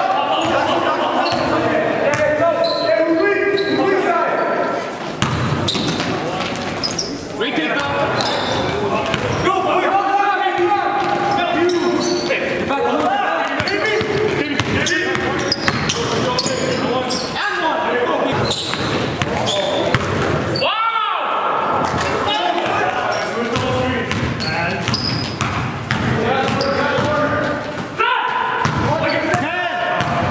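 Basketball game play in a large echoing gym: a ball dribbled and bouncing on the court floor, mixed with players' voices calling out.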